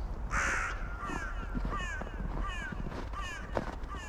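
Crow cawing: one loud harsh call, then four shorter falling caws spaced about three-quarters of a second apart.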